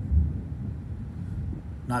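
Low rumbling handling noise on a handheld phone microphone as it is moved, strongest just after the start.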